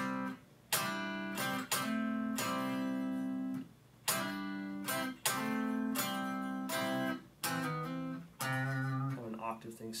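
Electric guitar playing a lead lick in double stops: pairs of notes picked together and left to ring for up to about a second each, in several short phrases with brief breaks between them.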